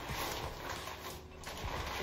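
A rolled-up shower curtain being handled and pushed up over its rod: the fabric rustles, with light irregular scraping and creaking.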